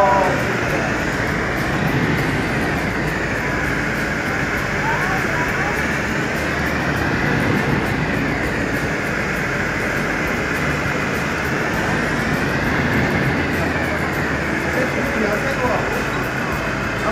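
Vertical wind tunnel for indoor skydiving running at flying speed: a loud, steady rush of air, with a higher hiss that slowly swells and fades every five seconds or so.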